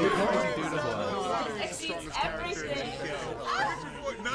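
Several people's voices talking and exclaiming over one another at once, a jumble of overlapping chatter.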